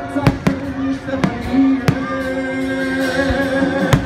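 Aerial fireworks shells bursting in about five sharp bangs spread over four seconds, over loud music with long held notes.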